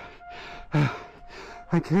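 A runner breathing hard after a 5 km treadmill run, with short voiced gasping exhales that fall in pitch, about one a second.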